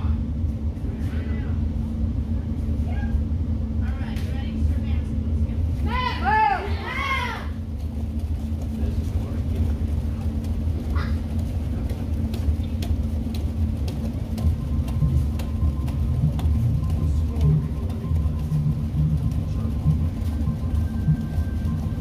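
Indistinct voices over a steady low rumble in a large hall, with one short voice call rising and falling in pitch about six seconds in.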